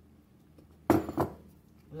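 Two quick clinks of a bowl and kitchenware against a metal pan, about a third of a second apart, as potato pieces are tipped from the bowl into a pan of broth.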